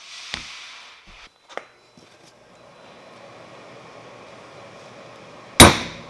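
One sharp, loud metal blow near the end as a steel letter stamp is struck to mark a brass hammer head resting on an anvil. Before it come a short scrape and a few light clicks as the brass block is set down and the stamp is positioned.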